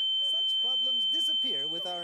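A steady, high-pitched electronic tone, like a sine-wave beep, held throughout and easing off over the last half second. A man's voice is heard faintly beneath it.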